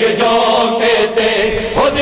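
A group of men chanting a Punjabi noha (Shia lament) in unison, holding a long note, with a short break and the next line starting near the end.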